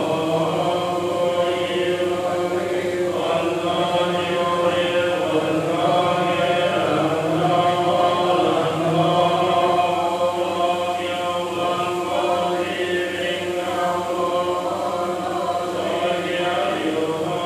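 A group of worshippers chanting Buddhist prayers together in a steady, continuous stream of many voices.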